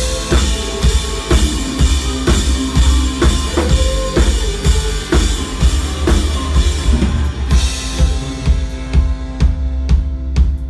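Live rock drum kit playing a steady beat, kick and snare with cymbal wash, over a low sustained bass. The cymbals drop out near the end, leaving separate sharp hits.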